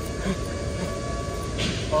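Steady low outdoor city rumble with a faint steady hum, with a man's short exclamation "wa" near the end.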